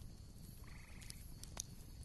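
Faint background ambience: a low hiss with one short animal call, about half a second long, starting roughly two-thirds of a second in.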